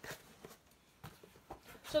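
Faint handling of a cardboard box as it is opened: a few light scuffs and taps of the cardboard.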